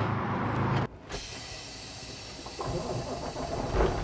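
Kenworth W900L semi truck's diesel engine idling with a steady low hum. About a second in, the sound cuts abruptly to a quieter, steady hiss.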